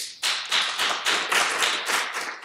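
Audience applauding: many hands clapping in a quick, dense patter.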